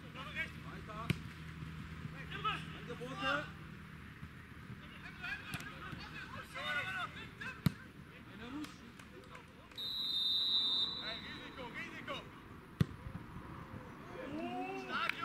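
Referee's whistle blown once for about a second, about ten seconds in, with players shouting and a football kicked sharply three times: once near the start, once midway and once near the end.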